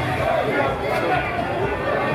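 Several people talking at once in a small crowd: overlapping chatter with no single clear voice.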